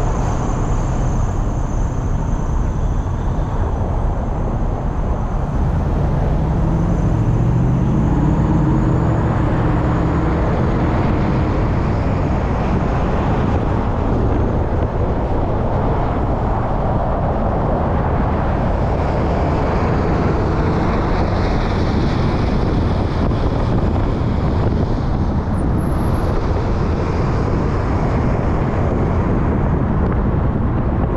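Steady road and tyre noise of a vehicle travelling at freeway speed, with traffic running alongside. A louder low rumble swells and fades about six to ten seconds in.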